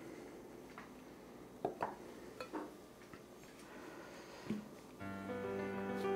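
A few short knocks and taps of a steel bench scraper against a wooden cutting board as dough is cut and handled. Background music comes in near the end.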